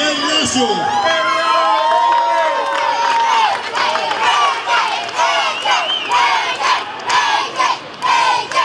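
A group of children cheering and shouting together, many high voices overlapping, with long drawn-out shouts about a second in.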